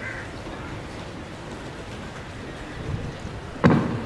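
Steady outdoor background noise with a short, faint call at the start, and a sudden loud thump near the end that is the loudest sound.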